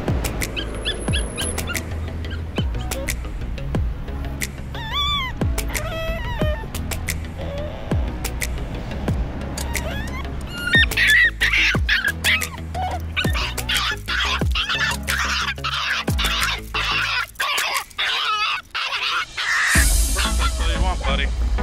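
Background music with a steady bass, and over it a dog whining and crying in high, wavering calls. The calls come now and then in the first half and run nearly without break in the second half. This is a dog protesting separation from its handler.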